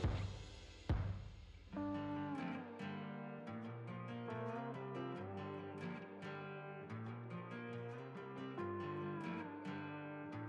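Background music led by plucked and strummed guitar, starting about two seconds in, with a sharp hit about a second in.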